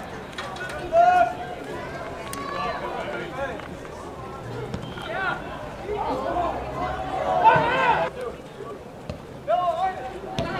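Shouting voices of players and spectators at a soccer match: short calls and yells come and go over the background, with louder bursts about a second in and around seven to eight seconds in.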